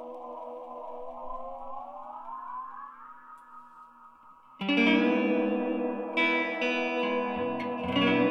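Electric guitar through a Maize Instruments analog-style delay pedal: the lingering echo repeats bend upward in pitch as a knob on the pedal is turned, then fade away. A little past halfway a loud strummed chord comes in, followed by two more strums, each trailing into echoes.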